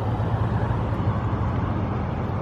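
Steady outdoor rumble with an even hiss over it, unchanging throughout, with no distinct events.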